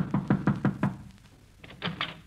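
Knocking on a wooden door, a quick run of about six knocks in the first second, followed by two faint clicks near the end.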